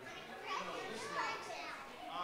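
Indistinct chatter of many people talking among themselves, children's voices among them.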